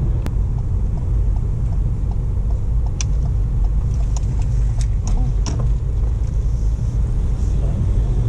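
Steady low rumble of engine and road noise inside a moving car's cabin as it turns at a junction, with a few faint clicks in the middle.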